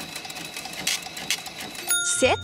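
Edited-in timer sound effect: rapid mechanical ticking while a countdown bar fills, ending in a short bright ding just before the end, as the interviewee's answer is revealed.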